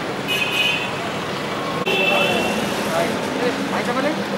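Traffic noise and people talking in the background, with two short, high-pitched tones, one near the start and one about two seconds in.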